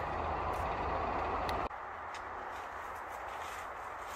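Steady outdoor background noise with a low rumble. It cuts off abruptly a little under halfway through, leaving a quieter hiss with a few faint rustles.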